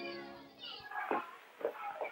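A film score's held chord fading out, then a few short, faint children's voices calling and chattering.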